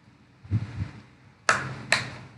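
Three short knocks: a softer dull one about half a second in, then two sharp, louder ones close together about a second and a half in.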